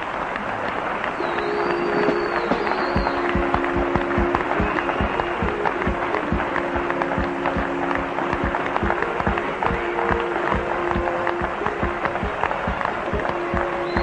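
Audience applause, dense steady clapping, with music playing over it in long held notes.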